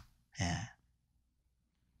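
A man's single short, quiet "ye" (Korean "yes") about half a second in, then near silence.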